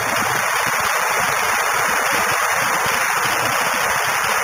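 Audience applauding in a large hall, a steady dense wash of clapping at the close of a speech.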